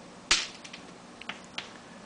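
Chalk striking a blackboard while writing: one sharp tap about a third of a second in, then a few lighter ticks.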